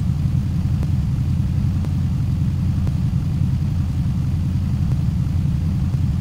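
Lifted Chevy Blazer's engine idling: a steady low rumble that holds even throughout.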